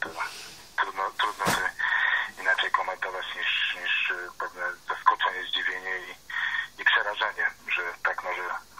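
A man talking over a telephone line, the voice thin and narrow as in a phoned-in broadcast interview, with one sharp click about a second and a half in.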